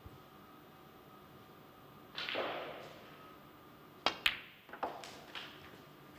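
Snooker shot: the cue tip strikes the cue ball, and a fraction of a second later the cue ball clicks sharply into the black. A few softer knocks follow as the balls run on, and there is a brief muffled noise about two seconds in, before the shot.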